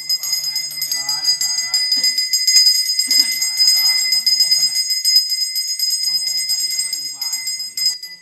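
A brass pooja hand bell rung fast and without pause, its clapper strokes blending into one steady high ringing. A voice chants over it.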